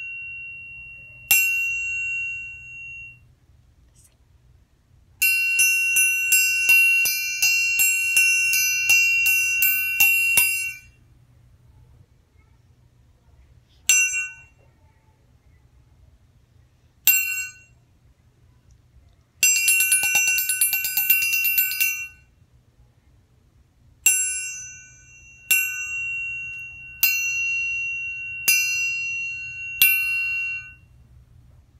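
Metal triangle struck with a beater, ringing with a high clear tone. A single strike, then a quick run of strikes, two more single strikes, a fast roll, and steady strikes about every second and a half near the end, with silent gaps between.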